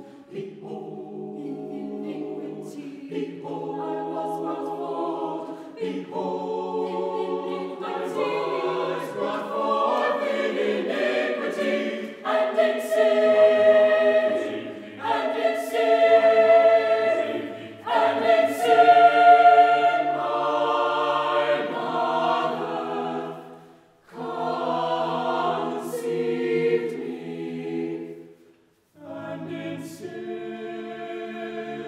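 Mixed choir of men's and women's voices singing unaccompanied in sustained chords. The singing swells to its loudest in the middle, then breaks off briefly twice between phrases near the end.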